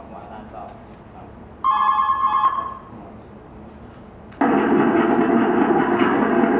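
Telephone ring played as a stage sound effect through a theatre's speakers: a short electronic ring of about a second begins about one and a half seconds in, and a louder, longer ring starts abruptly near the end.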